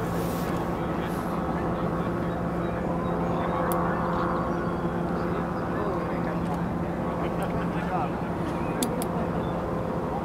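A steady engine hum with voices murmuring in the background and a couple of brief clicks.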